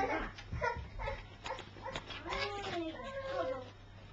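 A cat meowing: drawn-out calls that rise and fall in pitch, in the second half.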